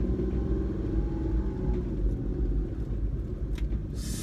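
Kei van's engine and road rumble heard from inside the cabin as it creeps along at low speed. A steady engine hum sits over a deep rumble and fades about halfway through as the van eases off.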